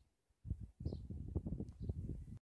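Low rumbling, crackling handling noise on the recording device as it is carried and moved, starting about half a second in, with two faint high chirps.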